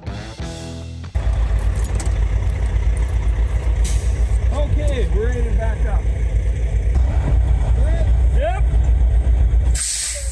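A semi truck's diesel engine idling close by: a loud, steady low rumble with a fast even pulse that starts suddenly about a second in. Faint voices are heard over it.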